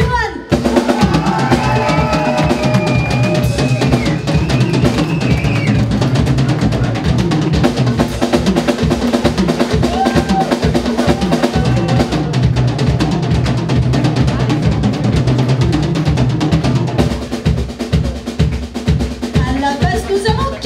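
Live symphonic metal band playing: a drum kit with rapid, driving bass drum beats under distorted guitars, bass and keyboards, with held melody lines over the top.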